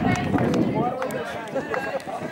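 Several people talking at once outdoors, overlapping casual chatter, with a low rumble of the camera being moved near the start.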